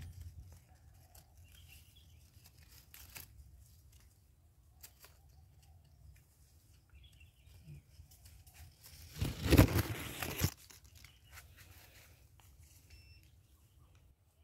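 Quiet, with scattered faint clicks, then about nine seconds in a loud burst of rustling handling noise lasting a little over a second, from the hand and the longan shoot's leaves brushing close to the microphone.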